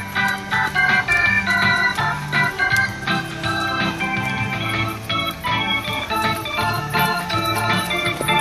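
Organ music: a run of chords and melody notes over a bass line, with the notes changing several times a second.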